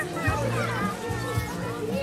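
Children's voices in the distance, with music playing in the background.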